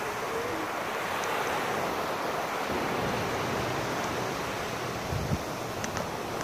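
Ocean surf breaking and washing up the beach, a steady rush of waves, with a brief low thump near the end.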